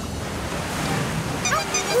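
A big ocean wave rushing and breaking, a steady wash of surf noise. Near the end a voice starts calling out over it.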